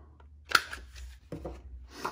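A handheld corner-rounder punch snaps once as it cuts the corner of a card, with a softer knock about a second later.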